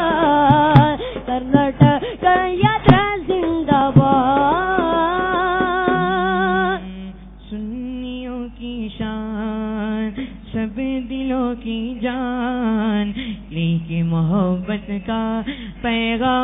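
Welcome song sung by voices, with sharp loud beats through the first few seconds; about seven seconds in the beats drop away and the singing goes on in longer held notes.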